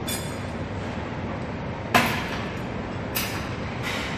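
Gym weights and machine parts clanking: four sharp metal knocks over a steady background hum. The first rings briefly, the loudest comes about two seconds in, and two more follow near the end.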